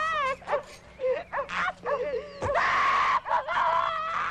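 A woman screaming and wailing in distress, her cries wavering and sliding in pitch, with one sharp thud about two and a half seconds in.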